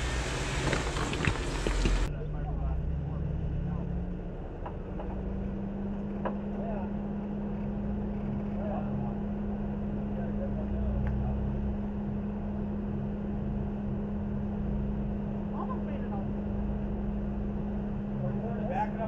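Jeep Wrangler engine running steadily at low revs as the Jeep crawls slowly over rocks, a steady low hum that steps up slightly about four seconds in. In the first two seconds there is a louder, rougher noise with a few sharp clicks.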